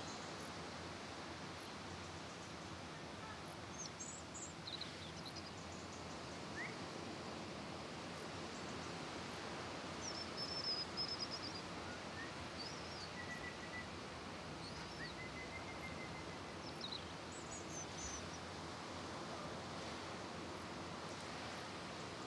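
Quiet seaside outdoor ambience: a steady soft wash of noise with scattered short, high bird chirps and a couple of brief trills.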